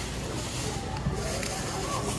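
Steady background noise of a busy store checkout with a low hum, and plastic shopping bags rustling as they are handled.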